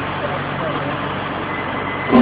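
1987 Sullivan MS2A3 air track drill's machinery running steadily: a low hum under an even rushing noise, with no strikes.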